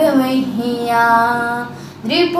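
A girl singing a Rajasthani devotional bhajan unaccompanied. She draws out the end of a line in one long held note that fades away near the end.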